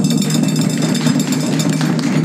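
A fast, continuous drum roll on chindon-ya drums, holding steady in loudness.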